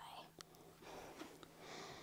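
Near silence: faint room tone with a soft click about half a second in and a faint hiss near the end.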